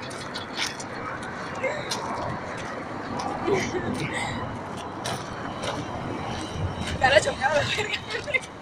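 Faint, indistinct talk of people walking outdoors over steady background noise, with a louder burst of voices near the end.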